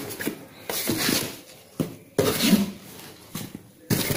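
Cardboard packaging and a plastic sheet being handled as a fan's box is opened: a few bursts of scraping and rustling with short pauses between.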